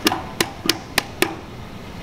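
Five quick, sharp knocks about a third of a second apart, from a gloved hand rubbing and pressing on a hydro-dipped plastic hard hat so that the shell knocks. They stop about a second and a quarter in.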